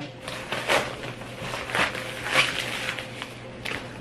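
Paper and plastic mailer packaging rustling and crinkling in several short, irregular bursts as a book is taken out of it.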